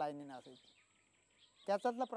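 A man speaking in Marathi: a phrase trails off with falling pitch, there is a pause of about a second, and he speaks again near the end.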